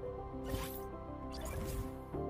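Outro music of steady held tones, with falling swoosh effects about half a second in and again near the end.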